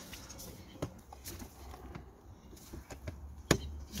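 Rubber air intake pipe being worked and pushed onto the mass airflow sensor housing and plastic airbox: scattered light clicks and knocks of rubber and plastic, with one sharp click about three and a half seconds in as the pipe seats.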